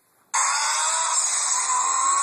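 A toy car's small electric motor whirring loudly and steadily, heard through a phone's speaker as a recorded clip starts playing; it comes in suddenly a moment in, with a faint whine that rises slightly in pitch.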